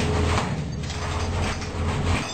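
Heavy punching bag swinging on its chain, the chain and hanging hook creaking and grinding, over a steady low hum.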